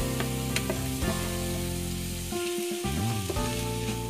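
Shredded cabbage and carrot sizzling in hot oil in a kadhai, stirred with a wooden spatula that clicks against the pan a few times. Steady sustained tones of background music run underneath.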